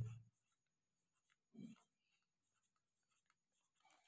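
Faint scratching of a pencil writing a word by hand on drawing paper, in short strokes. There is one soft low bump about a second and a half in.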